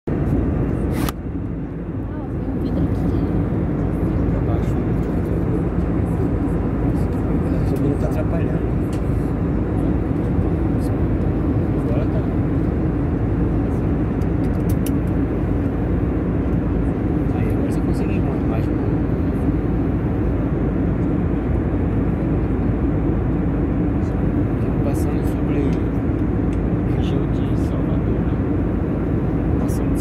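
Steady drone of an airliner cabin at cruise altitude: engine and airflow noise heard from a window seat beside the engine. There is a brief click and a dip in level about a second in.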